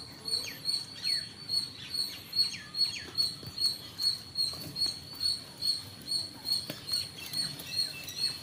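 Birds chirping: a high chirp repeating evenly about two to three times a second, with several short downward-sliding calls over it in the first three seconds.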